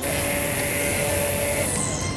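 A Worx GT cordless string trimmer running steadily: an even motor whine with one held tone over the whir of the spinning line. It starts abruptly and turns muffled near the end.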